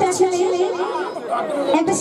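A woman speaking in Bengali into a handheld stage microphone, her voice carried over a PA system.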